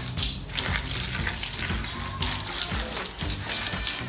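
Water jetting from a handheld pressurized hose spray nozzle, a steady hiss and splash as the spray hits a mountain bike's muddy frame, pedal and front wheel.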